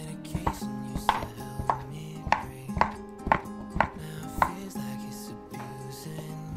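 A large kitchen knife chopping peeled papaya on a wooden cutting board: about nine sharp knocks of the blade on the board, roughly two a second, stopping about four and a half seconds in.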